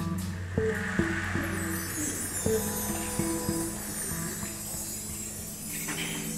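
Live band music in a quieter passage: a marimba picks out a sparse line of short struck notes over a soft wash of percussion.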